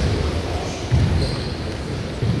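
Dull thuds of kicks and blocks landing during partner karate drills, echoing in a large gym hall, with the loudest thud about halfway through.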